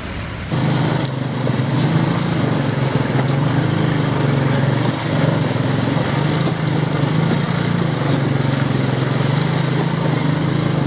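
Motorcycle engine running steadily at low speed, heard from the rider's seat as it crosses a stream on the road; it cuts in abruptly about half a second in.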